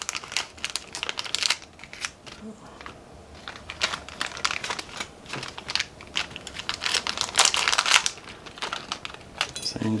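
Thin clear plastic bag crinkling as hands handle and open it, in irregular bursts of crackle with short pauses between.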